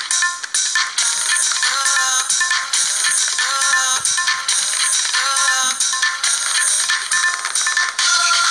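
Music track: an upbeat song with a steady, evenly spaced beat and a bright, high melody, with little bass.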